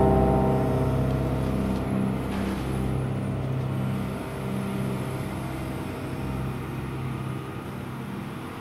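Diesel engine of a hydraulic excavator running steadily as its boom and bucket work, easing down a little in loudness toward the end.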